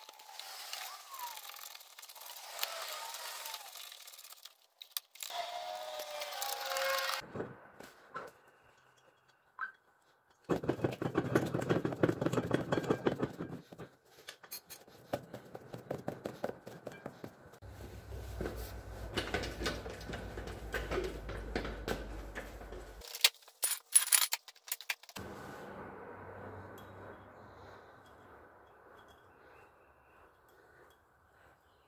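Hand-tool work on an ATV front suspension and wheel hub: metal scraping and squeaks, then a stretch of rapid clicking, a low hum with clicks, and a few sharp knocks about 24 seconds in.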